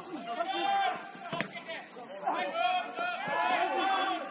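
Football players shouting and calling to one another across the pitch, several raised voices overlapping, with a single sharp knock about a second and a half in.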